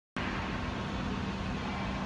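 Steady mechanical hum and noise of industrial equipment in a factory hall, with a faint low steady tone, cutting in abruptly a moment after the start.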